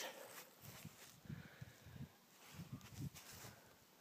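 Near silence, broken by faint, irregular soft low thuds.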